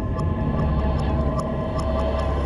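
Cinematic soundtrack intro: a low, steady drone with held tones and a sharp ticking pulse about two and a half times a second.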